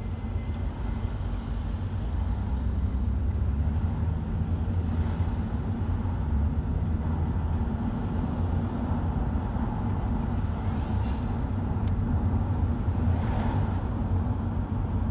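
Steady low rumble of a car driving on city streets, heard from inside the car. Brief swells of passing traffic come about five seconds in and again near the end.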